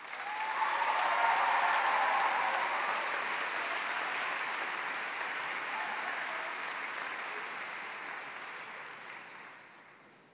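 Large audience applauding, with a few cheers in the first seconds. It swells quickly at the start and slowly dies away near the end.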